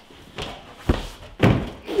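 Thuds of a climber coming off a bouldering wall and landing on the padded gym floor: a light knock about half a second in, then two heavy thumps about half a second apart.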